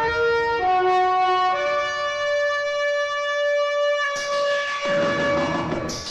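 Dramatic film background score: a horn-like note steps through a few pitches, then holds one long note. A rushing swell of noise builds under it about four seconds in.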